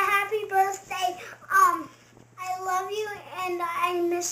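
A young boy's voice talking in a high, sing-song way, with a short pause about two seconds in.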